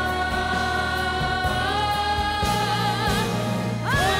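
A boys' vocal group sings a long held harmony over a band's steady bass, with the voices wavering in vibrato near the end of the note. A new held chord slides up into place just before the end. These are the closing notes of a slow ballad.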